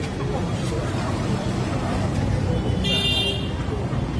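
Street traffic and crowd voices, with a short, high-pitched horn toot about three seconds in.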